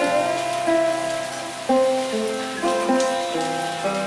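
Slow sitar melody, single plucked notes ringing over a steady low drone, with rain sounds mixed in underneath.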